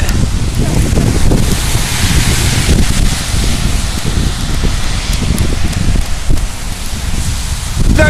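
Wind buffeting the camera's microphone outdoors: a loud, steady rushing noise with no break.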